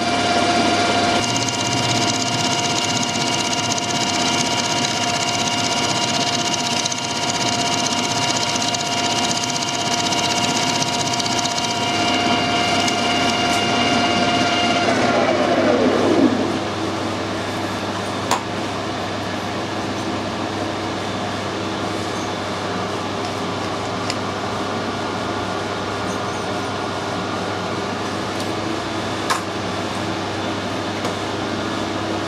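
Metal lathe running under a thread-cutting pass, its gear train giving a steady multi-tone whine. About halfway through the whine falls in pitch and dies away as the spindle is switched off and runs down. A steady background hum remains, with two sharp clicks.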